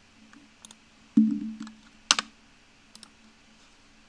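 Computer mouse clicking now and then while objects are dragged in the design software. About a second in there is a loud dull thump that rings low for about half a second, and a sharp double knock follows about a second later.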